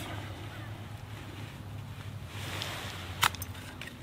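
Quiet stretch with a low steady hum, broken by one sharp click about three seconds in as the metal cooking cups of a backpacking stove are handled.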